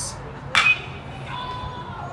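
Metal baseball bat hitting a pitched ball: one sharp, ringing ping about half a second in, sending a ground ball toward third base.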